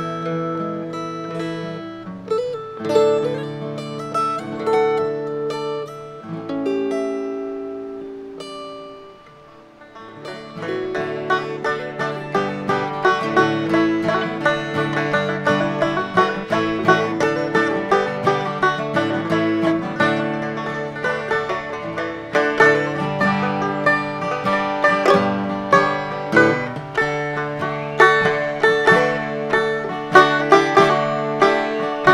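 A mountain dulcimer and an acoustic guitar finish a tune on held chords that fade out about nine seconds in. Then a banjo-headed dulcimer and the acoustic guitar start a brisk picked tune with quick, banjo-like plucked notes.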